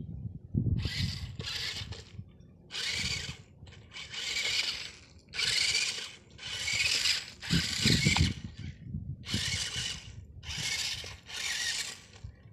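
Small electric motor of a homemade battery-powered toy tractor whirring in about ten short on-off bursts, each half a second to a second long, with a few low knocks among them.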